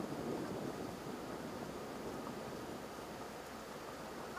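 Steady rushing of wind and water aboard a sailboat under way.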